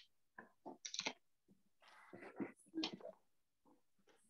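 Faint, scattered rustles and light knocks of a paper worksheet being picked up and handled, in short separate bits with silence between them.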